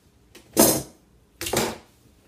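Two short scraping swishes, about a second apart, as a yardstick is slid off the shade fabric and laid on the work table.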